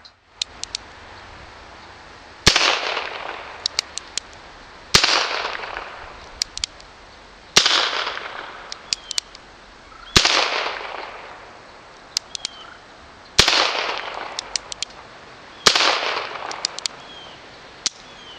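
Colt Frontier Scout .22 rimfire single-action revolver fired six times, roughly every two and a half seconds, each shot followed by a long fading echo. Between shots comes a quick series of small clicks as the hammer is thumbed back to cock it for the next shot.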